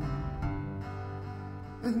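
Live rock band playing between sung lines, with guitars holding a chord over bass; the band swells back in fuller at the very end.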